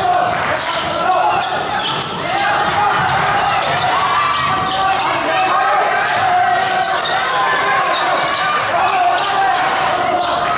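Basketball being dribbled on a hardwood gym floor, with sharp knocks throughout and steady calling and cheering voices in an echoing hall.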